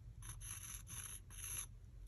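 Awl tip scraping across a wooden earring blank as it drags paint around a circle: about four short, faint scratchy strokes in a row.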